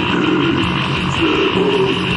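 A heavy metal band playing distorted, dense, loud music on a lo-fi 1993 demo tape recording.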